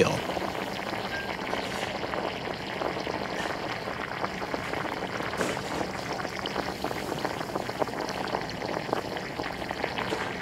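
Banana slices deep-frying in a large industrial fryer of hot oil: a steady sizzle of bubbling oil full of small crackles.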